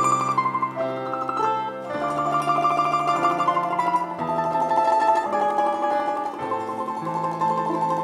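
Instrumental music on plucked strings: a mandolin-family instrument playing a melody of held notes over a lower accompaniment.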